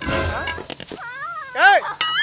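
A short, high cry that rises and then falls in pitch about one and a half seconds in, after a brief noisy rustle at the start.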